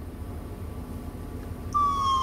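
Low steady rumble inside a car, then near the end a police siren switches on: one high wailing tone that slides slowly downward.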